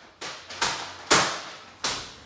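Sheets of paper being handled and put down on a wooden desk: four sharp rustles and slaps about half a second apart, the loudest a little past one second in.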